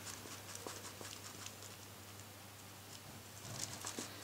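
White eraser rubbing on a plastic Ghostface mask to lift scuff marks: faint, irregular short scratchy strokes, most of them in the first second and a half.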